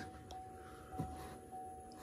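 A faint steady high tone over a low rumble, with a light click about a second in: an unexplained noise from the C7 Corvette just after it was restarted, which the owner thinks comes from under the car.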